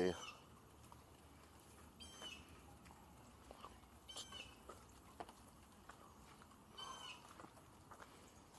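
Faint bird calls: three short chirps, about two seconds apart, over a quiet outdoor background with a few light ticks.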